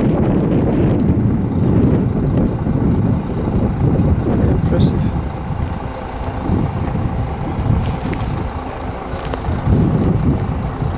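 Wind buffeting the camera microphone: a loud, gusting low rumble that eases a little after about six seconds.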